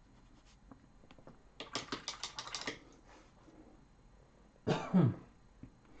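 A quick burst of computer keyboard typing lasting about a second, then a man coughs once near the end.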